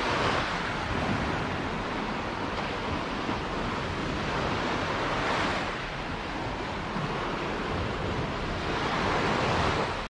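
Small sea waves washing and lapping against a rocky shore, swelling three times about every five seconds, with some wind rumbling on the microphone.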